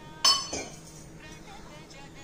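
A steel kitchen utensil gives one sharp, ringing metallic clink, followed by a softer knock. Faint background music runs underneath.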